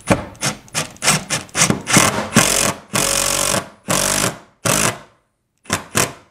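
Cordless impact driver running a lag bolt through a steel TV-mount bracket into the wall in repeated trigger bursts: a quick string of short bursts, then several longer ones of about half a second, until the bolt is snug.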